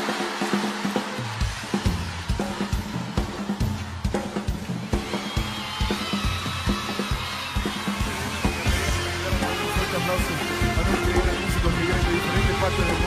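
Live band music starting up: drums and bass come in about a second in, and more instruments join around the middle.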